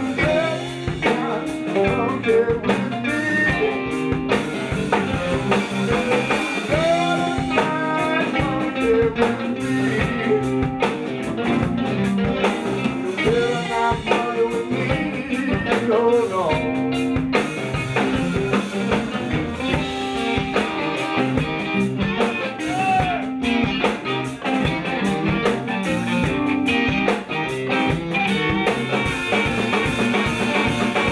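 Live blues band playing an instrumental groove: guitar over a steady drum kit, with a fiddle, and some notes gliding up and down in pitch.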